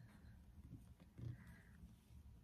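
Near silence: a low room hum, with one faint soft sound a little over a second in.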